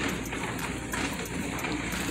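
Background noise of a large store: a steady hiss with faint scattered taps and rustles.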